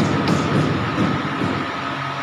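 Hydraulic three-roller pipe bending machine running as its rolls drive a pipe through the bend: a steady mechanical running noise with a continuous whine and a few sharp clicks in the first half second.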